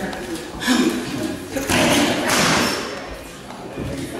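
Boxing gloves striking focus mitts during pad work: a couple of sharp smacks, the loudest about halfway through, each followed by a hissing sound.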